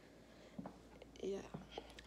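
A woman's voice saying a short, soft 'yeah' just past the middle, otherwise quiet room tone.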